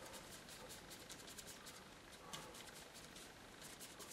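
Faint, scratchy strokes of a flat paintbrush scrubbing blue acrylic paint back and forth across a primed painting board, in a quick run of short strokes.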